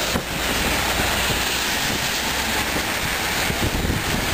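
Strong wind buffeting the microphone with a low rumble, over a steady hiss of heavy rain.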